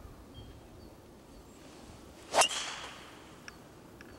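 A golf driver swung at a teed ball: a short swish of the club coming through, then a single sharp crack of the clubhead striking the ball about halfway in, with a brief ringing tail.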